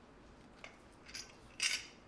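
Metal handcuff chain clinking as the hands move: two small clicks, then a louder short rattle near the end.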